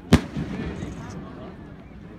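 One sharp bang of an aerial firework shell bursting, just after the start, with a short rolling echo after it. People talk in the background.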